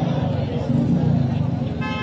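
Outdoor urban background: a low, steady rumble of muffled voices, with a brief vehicle horn toot near the end.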